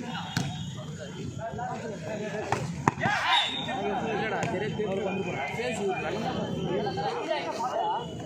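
Players and spectators chattering and calling out over a volleyball rally, with a few sharp slaps of hands striking the ball, the loudest about three seconds in.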